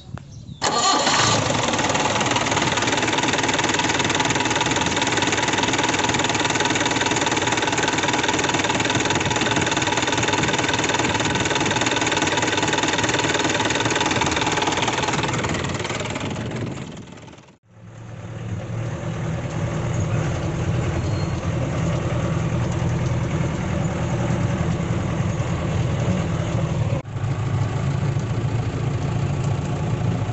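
Diesel engine of a Mahindra Major jeep, running steadily at idle. It comes in suddenly about a second in and fades out past the halfway point. It then returns sounding deeper and heavier to the end.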